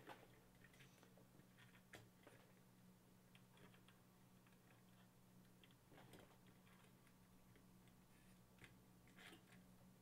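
Near silence with a few faint, brief clicks, around 2 s, 6 s and 9 s in: a Zalman CNPS 9900 Max heatsink being handled and set down onto the CPU socket by hand.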